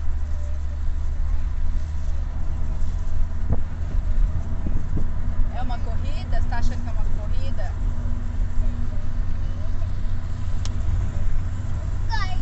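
Steady low rumble of road and engine noise inside a moving car's cabin at highway speed. A child's voice chimes in briefly about halfway through, and a few light knocks sound just before it.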